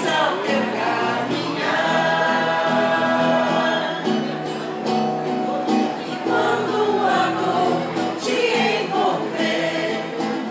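A vocal group singing together, with some long held notes.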